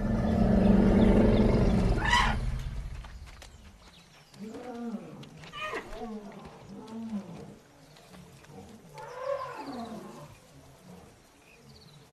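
African forest elephant rumble, a deep, loud greeting call of the kind a calf can feel through her feet, fading away over the first three seconds, with a short sharp higher-pitched blast about two seconds in. After that come several softer elephant calls that rise and fall in pitch.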